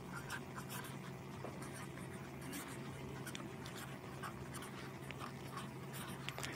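Black felt-tip marker writing words on a sheet of paper: faint, short scratchy strokes one after another, over a steady low hum.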